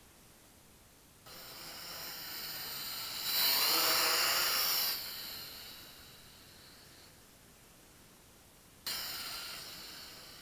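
Mini quadcopter's small motors and propellers giving a high-pitched whine that starts suddenly as the throttle comes up. It swells to its loudest for a couple of seconds, then fades away. A second sudden burst of whine comes near the end.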